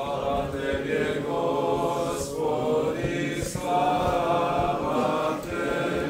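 Orthodox liturgical chant: voices singing in sustained, held notes, in several phrases with short breaks between them.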